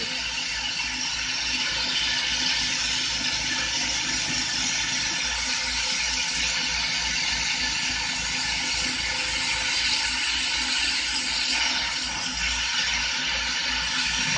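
Carlisle CC glassworking torch's oxygen-fuel flame hissing steadily as borosilicate glass is heated in it, with a fast, even low flutter underneath.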